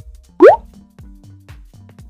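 Background instrumental music with a steady beat, and about half a second in a single loud, short rising 'bloop' plop sound effect.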